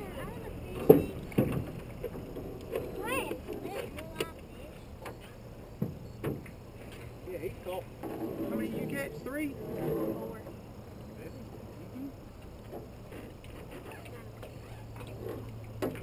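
Several sharp knocks and clunks of gear in a small flat-bottomed fishing boat, the loudest about a second in, with indistinct voices in between and brief high chirps around three seconds in.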